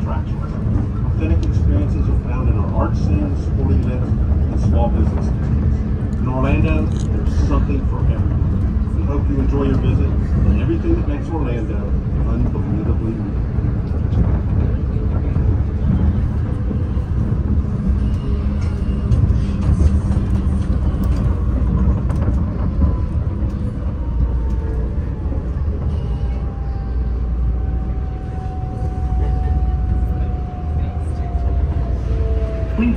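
Airport people-mover train running along its elevated guideway, heard from inside the car: a loud, steady rumble with people's voices in the first half. Over the last third a motor whine slowly falls in pitch as the train slows toward the station.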